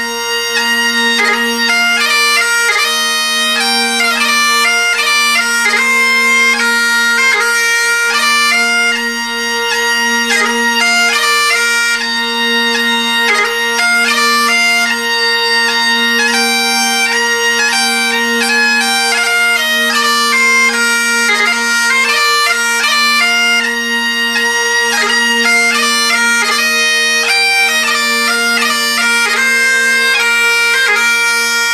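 Great Highland bagpipe playing a tune on the chanter, with quick note changes, over the steady hum of its drones: the bass drone sounds an octave below the two tenor drones.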